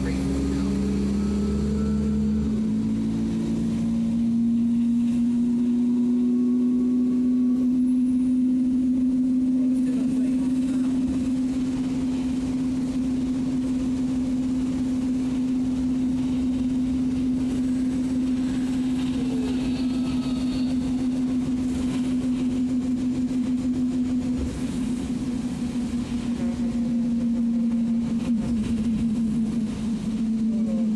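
Alexander Dennis Enviro 200 single-deck bus heard from inside the passenger saloon, its engine and automatic drivetrain making a steady drone while under way. The pitch climbs a little over the first few seconds, then holds steady, and wavers near the end.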